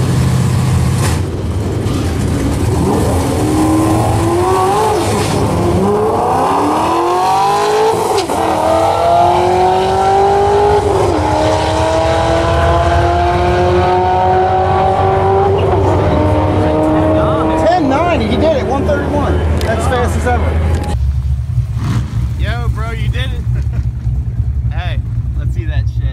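Cammed 2006 Corvette Z06 V8 at full throttle on a quarter-mile drag pass: the engine note climbs from about two seconds in, drops back at each of about three gear changes, then fades as the car runs away. Near the end a steady low engine idle is heard from inside the car.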